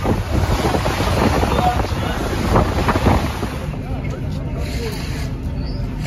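Wind buffeting the microphone over the rush of a ferry's wake. About three and a half seconds in it drops to a quieter, steadier background with a low hum.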